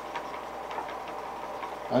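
A steady low background hum with a few faint light ticks in the first second, as fingers handle the wrapping material.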